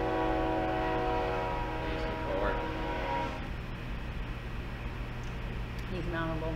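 A long, steady horn tone of several pitches sounding together, held for about four seconds and cutting off about three and a half seconds in.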